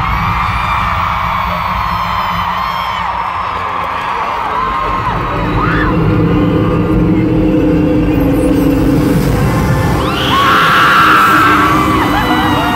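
Arena concert intro music over the PA with a deep, pulsing bass, and a crowd of fans screaming over it; the screaming swells louder about ten seconds in.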